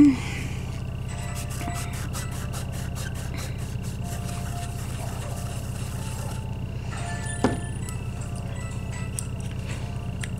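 Steady low electrical hum under the work, with a run of quick light clicks a second or two in as nail polish is scraped across a metal stamping plate, and a single sharp tap at about seven and a half seconds.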